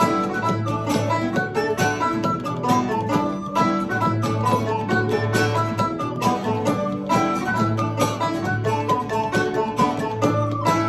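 A polka played live on a strummed plucked string instrument, keeping a quick, even beat, with an end-blown pipe carrying the melody over it.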